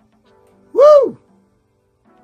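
A man's short hooting vocal exclamation about a second in, its pitch rising and then falling, over faint thrash-metal music leaking from headphones.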